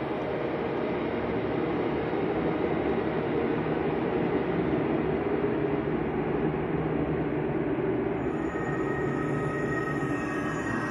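Steady, dense rumbling noise in the music-and-effects bed under the poem, even in level throughout. A high held tone comes in near the end.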